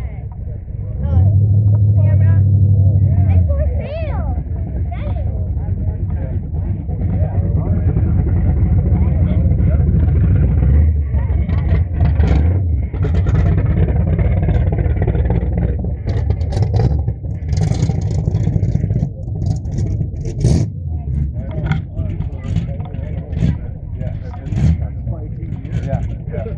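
Car engines running with a loud, deep, steady rumble, one engine loudest and most even for the first few seconds.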